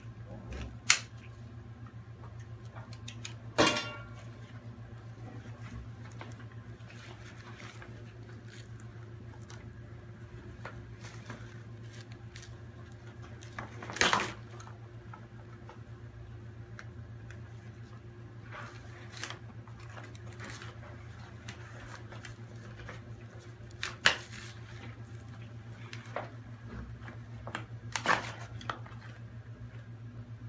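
Scuba gear being handled: about five scattered sharp clicks and clinks from buckles, clips and fittings on a buoyancy compensator, one with a short ring, over a steady low hum.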